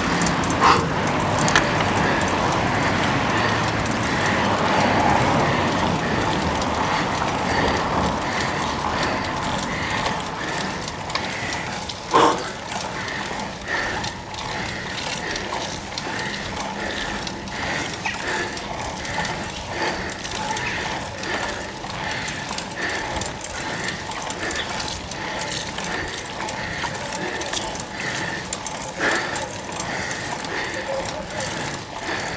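A road bicycle being ridden hard up a steep climb, with a rhythmic sound about three times every two seconds in step with the pedal strokes. A single knock comes about twelve seconds in.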